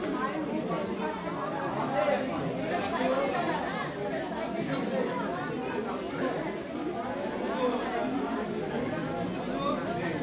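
A crowd of people talking at once: steady, overlapping, indistinct chatter with no single voice standing out.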